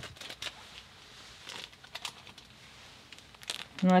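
Clear plastic fig-pop bag filled with potting soil crinkling in the hands as it is picked up and turned. The sound comes as scattered short rustles, a cluster near the start and another just before the end.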